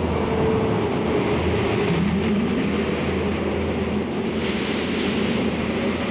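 Steady drone of a moving road vehicle, with a constant low hum and a faint wavering tone over a rushing noise. A brief hiss rises and falls about four and a half seconds in.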